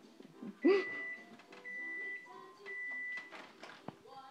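A refrigerator's door-open alarm beeping because the door is held open: three steady high beeps, each just over half a second long, about a second apart. A short loud vocal sound comes with the first beep.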